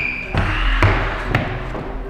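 Background music over footsteps running up a staircase, with a couple of distinct thuds about half a second apart in the first second and a half.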